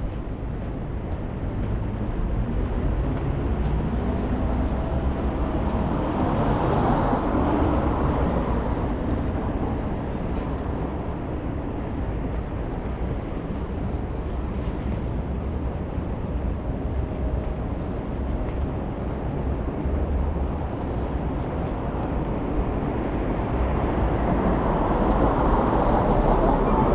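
City street traffic: a steady low hum of passing cars, with one vehicle swelling past about six to eight seconds in and another building up near the end.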